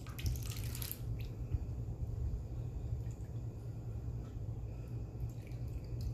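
Mild enchilada sauce poured into a bowl: a short wet pour in the first second, then a few faint drips. A low steady hum runs underneath.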